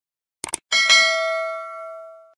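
Subscribe-animation sound effect: two quick mouse clicks about half a second in, then a notification bell chime that rings out and slowly fades.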